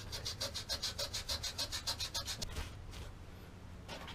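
Wet-or-dry sandpaper rubbed by hand over a shotgun's metal receiver in quick back-and-forth strokes, about seven a second, taking the black finish off. The strokes stop about three seconds in.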